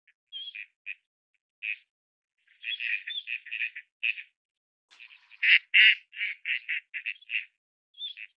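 Ducks calling: short nasal quacks, at first one at a time and then in quick runs, the last run loudest at its start and fading note by note.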